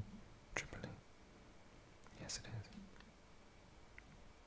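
A quiet pause in close-miked whispering: a faint sharp click about half a second in, then a soft breathy mouth sound a little past two seconds.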